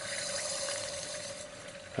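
Liquid nitrogen boiling with a fizzing hiss around a warm LED and metal tweezers just dipped into a small flask of it, fading gradually, with a faint steady tone underneath.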